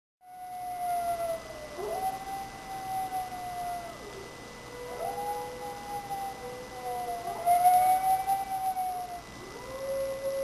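Several wolves howling in chorus: long, overlapping howls, each sliding up at its start and then held, with one voice taking over as another fades.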